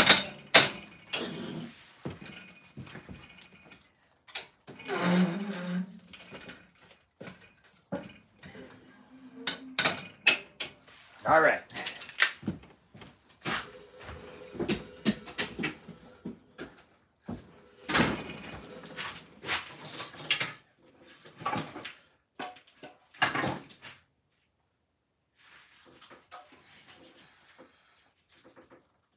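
Irregular knocks and clatter in a small wooden workshop: footsteps on a plank floor, things being handled and a door being shut, with a few indistinct vocal sounds. It goes quiet for the last few seconds.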